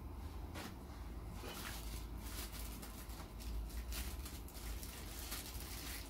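Thin plastic packaging crinkling in quick irregular crackles as a microscope eyepiece is handled and unwrapped, with light handling clicks, over a steady low hum.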